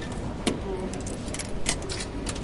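Railway station ambience: a steady low rumble with scattered sharp clicks and clacks, the loudest about half a second in and another near the end.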